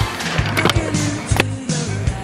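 Stunt scooter's wheels and deck rolling and scraping on a concrete ledge and ground, with a couple of sharp knocks, under music with a steady beat.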